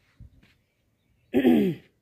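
A woman clears her throat once, a short voiced sound about a second in that falls in pitch.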